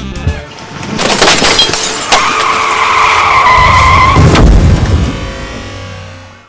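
Car tyres squealing in a long skid, ending in a heavy crash about four and a half seconds in.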